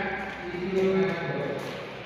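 A woman's voice making a drawn-out sound rather than words, in long held tones that shift in pitch.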